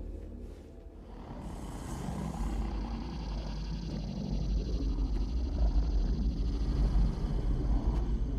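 Film soundtrack rumble: a deep rumbling drone that builds steadily in loudness, with a brief high hissing swish about one and a half seconds in.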